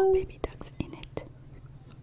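Close-miked ASMR eating sounds of a balut, a fertilised duck egg, being handled and bitten: a few soft, sharp clicks and quiet mouth sounds.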